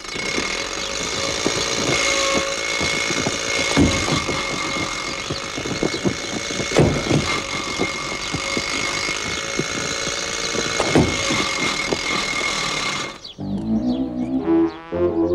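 Old open car's engine running as the car drives, a steady mechanical noise with a high whine through it and three heavier thumps along the way; it cuts off about a second before the end.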